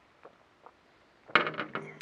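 A drinking glass set down on a glass patio tabletop with a sharp clink about a second and a half in, followed by a few lighter knocks and some ringing.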